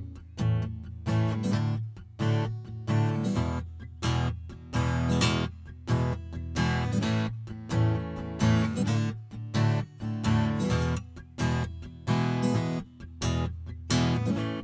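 Steel-string acoustic guitar strummed in a steady rhythm, about two strums a second, as an instrumental passage with no singing.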